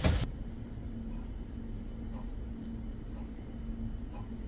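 Quiet room tone: a low steady rumble with a faint constant hum. It follows a brief burst of noise at the very start that cuts off abruptly.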